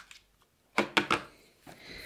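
A few sharp clicks close together about a second in, from a just-sharpened coloured pencil and its sharpener being handled and set down on the desk.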